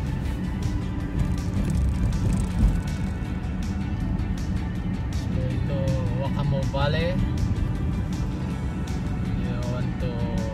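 Steady low road rumble of a moving car, with music playing over it: an even beat and a singing voice that comes in past the middle. A single low thump about two and a half seconds in.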